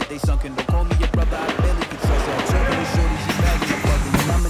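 Hip-hop/Afrobeat-style music with a heavy, booming kick drum falling in pitch about three times a second, and a hissy swell building in the second half.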